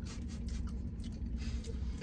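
Close-up chewing of a mouthful of gyro, with faint small rustles and ticks, over a steady low hum in a vehicle cab.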